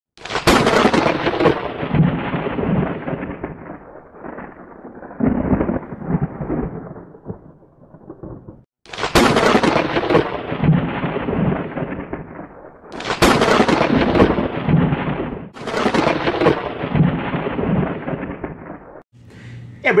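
Thunder sound effect: five or six claps of thunder, each starting sharply and rolling off over a few seconds, with brief silences between them.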